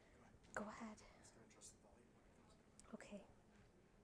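Near silence with two short bits of faint, hushed speech, about half a second in and again about three seconds in.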